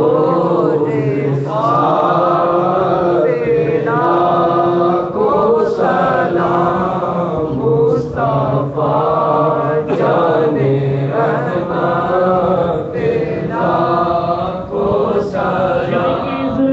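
A crowd of men chanting together in devotional Islamic recitation, loud and unbroken, in repeated rising and falling phrases.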